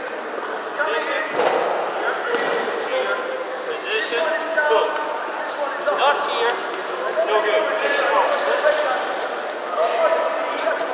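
People talking in a large, echoing hall, with a few short thuds now and then.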